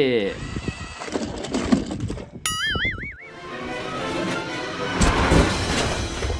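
Music with cartoon-style sound effects: a short warbling whistle about two and a half seconds in, then a build of noise and a crash-like burst near the end.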